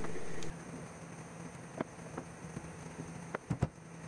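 Faint background with a few light clicks and knocks of handling: two single ones, then a quick cluster of three near the end. A steady background hum cuts off about half a second in.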